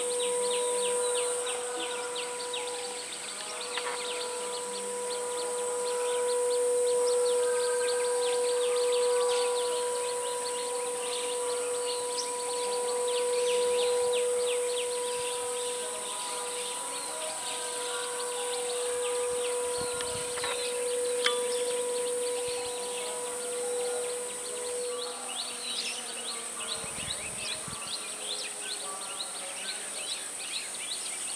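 Outdoor insect and bird chorus: a high, steady insect hiss with rapid chirps throughout. Under it runs a steady hum that fades out about 25 seconds in.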